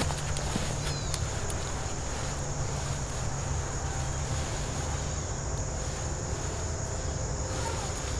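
Steady high-pitched drone of insects over a low, steady rumble, with a few faint clicks.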